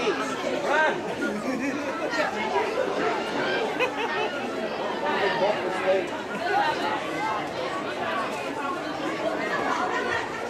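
Several voices talking over one another, with no words picked out: the chatter of sideline spectators at a rugby league game.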